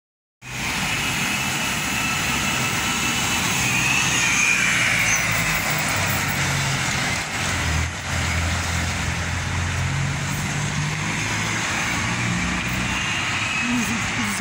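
Street traffic: a city bus and cars running past, with a steady low engine drone under the road noise, strongest in the middle.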